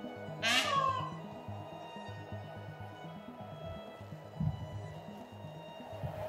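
A peacock (Indian peafowl) gives one loud, wailing, cat-like call about half a second in, its pitch falling, over background music with a steady low beat.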